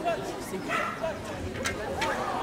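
A dog barking about three-quarters of a second in, over the chatter of a crowd of spectators.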